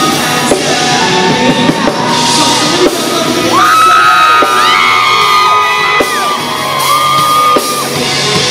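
Live pop-rock band with a male lead singer holding long notes into a microphone over drums and electric guitar, sliding up into a high sustained note about halfway through.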